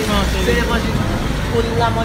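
A man talking in French and Creole over a low rumble that is strongest in the first second.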